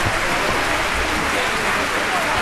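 Theatre audience applauding steadily at an opera curtain call.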